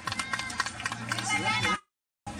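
Match sounds on a fútbol 7 pitch: quick footsteps and knocks with players calling out. About two seconds in, the audio cuts off abruptly to dead silence.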